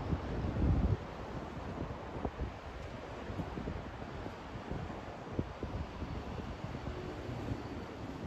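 Wind buffeting the microphone, with a strong gust in the first second, over a steady low rumble of distant city traffic.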